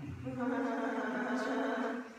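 A woman's voice holds one long, level note for about two seconds, like a drawn-out vowel or hum, and stops near the end.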